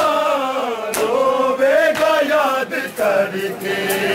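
Men's voices chanting a noha (Shia lament) together, held and gliding lines, with sharp chest-beating (matam) slaps, two of them clear at the start and about a second in.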